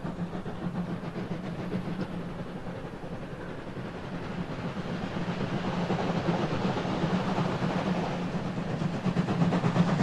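Steam locomotive 01 066, a class 01 express Pacific, approaching with its train: a rapid exhaust beat and rolling noise that grow steadily louder.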